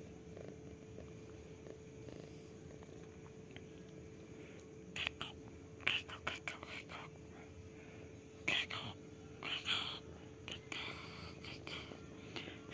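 Domestic cat purring steadily while being stroked. From about five seconds in, a run of short, breathy rustles is heard over the purring.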